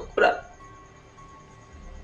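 A woman speaks one short word, then faint background music continues as a soft, steady drone with a light, evenly pulsing high tone.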